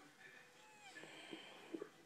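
Near silence: faint room tone with a few soft clicks as a plastic concealer stick is handled, and a faint short gliding tone a little after half a second in.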